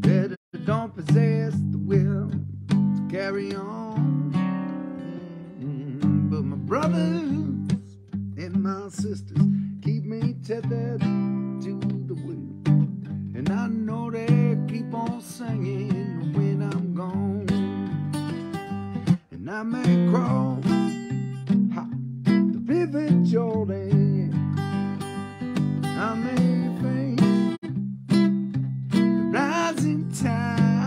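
Solo acoustic guitar playing an instrumental passage of a folk song, with strummed chords and picked notes at a steady tempo.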